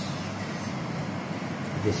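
Steady background noise, an even hiss with a low hum, in a pause between spoken words; a man's voice starts again near the end.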